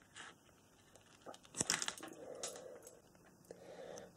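Wire strippers cutting into and pulling the plastic outer jacket off a thin phone charging cable: a few short snips and scrapes, the loudest about a second and a half in.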